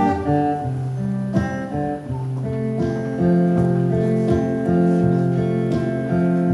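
Acoustic guitar played live through the PA, a chord progression with notes ringing on and changing about every second, with no voice over it.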